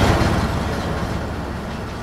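Heavy armored military vehicle running nearby: a loud, low engine-and-track rumble with a fast rattle. It starts suddenly and slowly fades.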